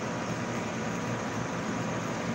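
Steady background room noise: an even hiss with a faint low hum and no distinct events.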